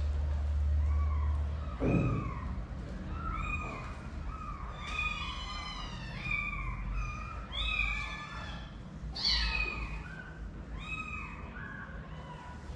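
Several kittens mewing over and over in short, high calls, several voices overlapping most thickly in the middle. A soft thump about two seconds in.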